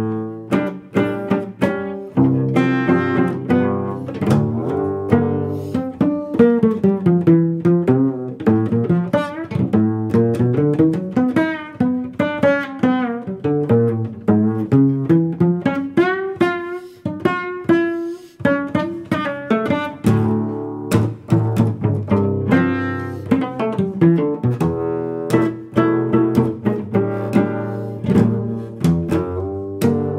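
Solo cello plucked pizzicato in a quick, continuous run of jazz lines. Each note starts sharply and fades, and the melody climbs and falls without a break.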